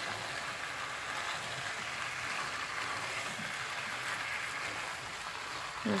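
Sliced potatoes with onion, carrot and mushrooms frying in oil in a pot, a steady even sizzle as they are stirred with a spatula.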